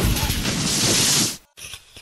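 Thunder-crash sound effect: a loud crackling noise with a deep rumble underneath that cuts off abruptly about a second and a half in.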